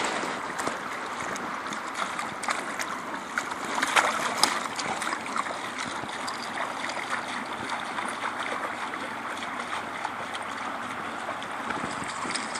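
Shallow meltwater runoff running steadily over concrete, with light splashes from a Newfoundland puppy wading through it, most of them in the first few seconds.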